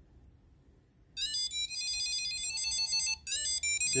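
Tile Bluetooth tracker, built into a TV remote and running off the remote's battery, playing its electronic find-me melody: a run of high, stepped beeping notes that starts about a second in. The tune shows that the Tile still works on the remote's battery.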